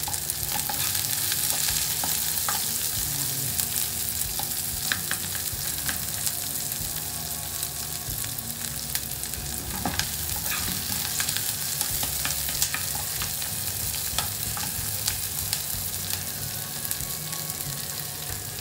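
Chopped garlic and onions sizzling in hot oil in a pot, with a steady hiss, stirred with a spoon that clicks and scrapes against the pot now and then.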